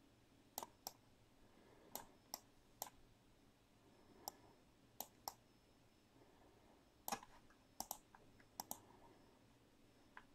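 Faint, irregular clicks of a computer mouse and keyboard in use, about a dozen, some in quick pairs, over near silence.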